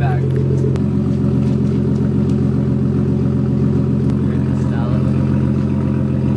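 Car engine idling steadily, with a slight change in its tone about a second in.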